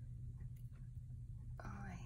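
Quiet room tone with a steady low hum, and a few faint small clicks as a metal jewelry stick pin is handled.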